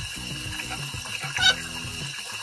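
Bathroom tap running into a sink, with a thin steady high-pitched whistle over the flow and a short splash of water about one and a half seconds in.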